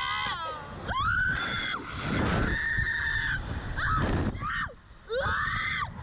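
Two girls screaming on a slingshot thrill ride: a run of about five long, high screams, several ending in a downward slide of pitch, over wind buffeting the microphone.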